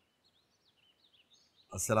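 Faint, scattered bird chirps over near silence, then a man's voice begins near the end.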